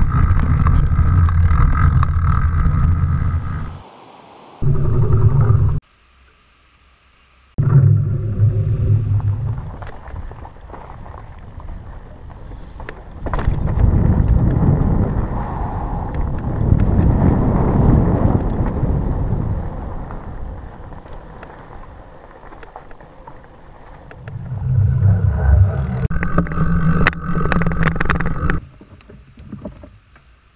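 Fat-tire mountain bike being ridden fast on dirt singletrack, heard from a helmet-mounted camera: wind rushing over the microphone and the wide tires rumbling over the trail, with a steady hum in some stretches. The sound breaks off and changes abruptly several times, with short quiet gaps in between.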